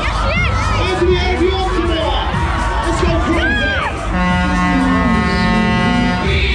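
Music played loud over a fairground Tagada ride's sound system, with a crowd shouting and whooping over it. About four seconds in, a long steady horn-like tone starts and steps down in pitch near the end.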